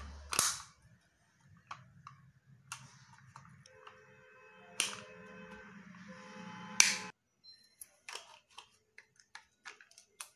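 Hard plastic clicking and snapping as a small plastic toy capsule is pried open by hand. Three sharp snaps stand out, about half a second in, near five seconds and near seven seconds, with lighter clicks between them and after.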